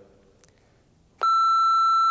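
Electronic test tone of a colour-bars test signal: one steady, high beep that switches on abruptly about a second in and holds at an even level, after a near-quiet start.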